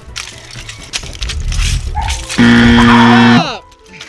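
A loud, flat electronic buzzer sounds for about a second, a little over two seconds in, marking the countdown running out. Before it, loose Lego bricks rattle and crunch underfoot.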